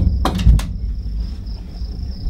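A few sharp metallic clicks about a quarter to two-thirds of a second in, from a bolt-action rifle's bolt being worked after the last shot. Under them run a low wind rumble on the microphone and a steady high insect trill.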